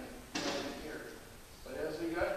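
A man lecturing, heard from a distance so that the words are hard to make out, with a short, sudden noise about a third of a second in before his speech picks up again near the end.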